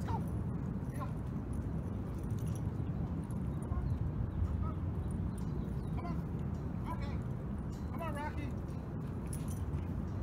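A man's voice making short calls a few times, about a second in and again near 6, 7 and 8 seconds, over a steady low rumble.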